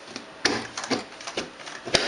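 Plastic lid of a bucket fermenter being pressed down around its rim and snapping onto it in a run of sharp clicks, about one every half second, the loudest about half a second in and at the very end.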